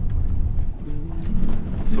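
Steady low rumble of tyres and engine heard inside a moving car's cabin, driving on a gravel road.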